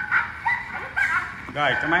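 Victor horn gramophone playing a record: thin, tinny recorded music of short notes with no bass. A man starts talking over it near the end.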